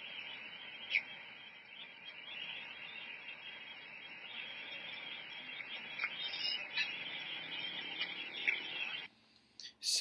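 Audio of a low-quality phone recording of a night-time fire at a strike site: a steady high hiss with a few sharp pops, cutting off suddenly about nine seconds in.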